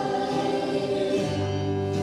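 Live worship band playing a slow song: acoustic and electric guitars and keyboard under a group of singers. A low bass note comes in a little over a second in.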